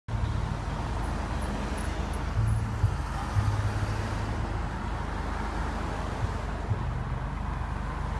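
Cars driving past at close range: steady engine and tyre noise over a low rumble, with a couple of brief bumps about three seconds in.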